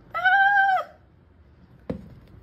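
A single meow-like animal call, under a second long, its pitch rising slightly and then dropping away at the end. A short knock follows near the end.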